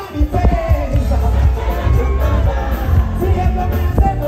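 Live pop music played loud through a concert PA: a heavy bass beat with a male voice singing over it. The bass drops out for a moment at the very start and then comes back in.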